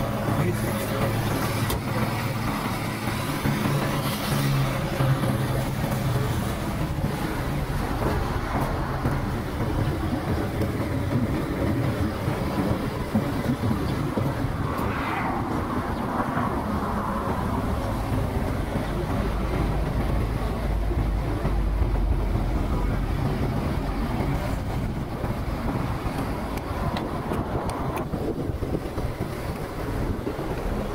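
Street traffic noise: a steady rumble of passing cars and engines, with faint voices in the background.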